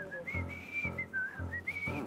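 A mobile phone ringtone: a whistled tune of one pure tone stepping up and down in pitch, with a low buzz coming and going beneath it. The phone is ringing with an incoming call.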